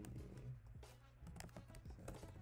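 Faint computer keyboard typing: an irregular run of quick key clicks.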